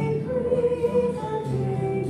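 A hymn sung with acoustic guitar accompaniment, in slow held notes.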